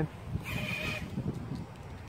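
Kingkong 110GT brushless micro quad with RotorX 2535 props punching out at full throttle on 3S: about half a second in, a brief high-pitched motor and prop whine that lasts about half a second as the quad shoots up and away.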